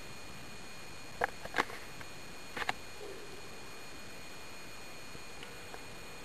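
Underwater ambience: a steady hiss with a faint high whine, broken by a few short, sharp pops clustered between about one and three seconds in.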